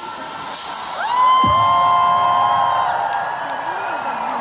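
Electronic music over a stadium concert's sound system, with the crowd beneath it. A bright rushing hiss fades out within the first two seconds. About a second in, a held synthesizer chord swells in, and a deep sweep drops in pitch just after.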